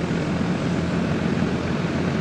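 R-410A air-conditioning condensing unit running: a steady drone of its fan and compressor with a low hum.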